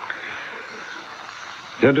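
A short pause in a man's speech filled with faint, steady hiss from an old, partly denoised tape recording; a man starts speaking again near the end.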